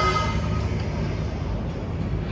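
City street traffic: a steady low rumble of passing vehicles, with a short pitched tone at the very start.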